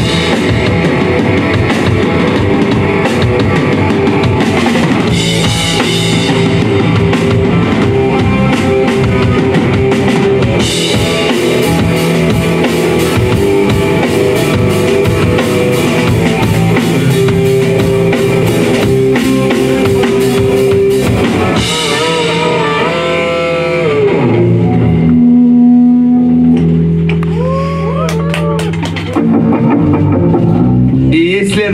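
Live rock band playing electric guitar, bass guitar and drum kit. About three-quarters of the way through, the drums stop and the song winds down on held, pitch-bending guitar notes and sustained bass notes ringing out.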